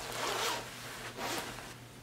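The zipper of a sherpa-lined anorak jacket being pulled by hand in two rasping strokes: a longer one lasting about half a second, then a shorter one about a second later.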